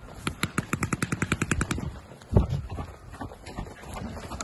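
Paintball marker firing a rapid string of shots, about ten a second, for a little over a second and a half. A single heavy thump follows about two seconds in.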